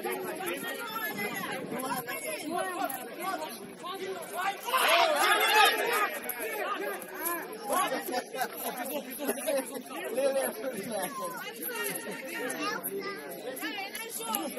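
Several voices of footballers and onlookers talking and calling out over each other, with a louder burst of shouting about five seconds in.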